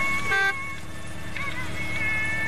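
A short car-horn toot from a van, about half a second in, over the low sound of its engine idling.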